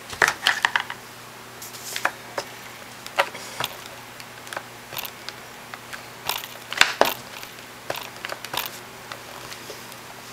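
Irregular light taps, clicks and paper handling on a tabletop: a paper pennant being smoothed down, then a wooden rubber stamp tapped against an ink pad, the loudest taps coming in two clusters, just after the start and past the middle.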